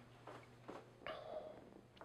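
Near silence: quiet room tone, with a faint short sound about a second in.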